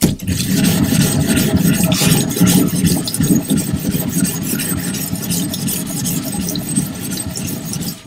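Japanese natural whetstone being lapped flat by hand, rubbed back and forth on a lapping plate under running water: a steady, loud scraping of stone on plate that starts suddenly and stops abruptly at the end.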